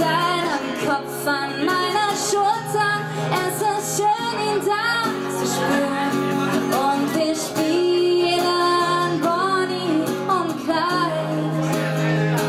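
A woman singing a pop-rock song live to her own strummed acoustic guitar.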